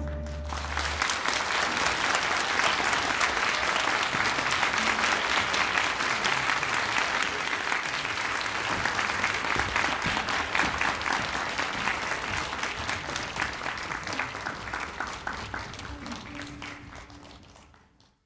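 Concert audience applauding at the end of an orchestral piece, as the last low note of the orchestra dies away in the first second. The applause holds steady, then fades out near the end.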